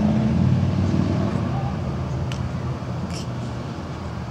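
A motor vehicle's engine running with a low, steady drone that slowly fades away, with two faint clicks in the second half.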